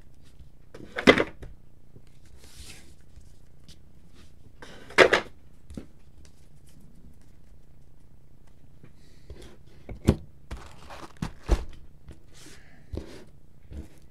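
Baseball cards and foil packs handled on a tabletop: two thuds about four seconds apart, then a quick run of light clicks and taps near the end.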